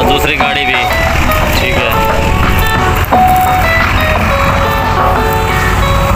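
Background music with held, stepping melody notes over the steady low rumble of a tractor-driven wheat thresher running. There is a brief knock about three seconds in.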